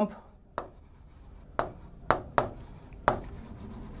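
A pen writing on a whiteboard screen: about five sharp taps as the tip lands at the start of strokes, with faint scraping between them as the words 'water pump' are written.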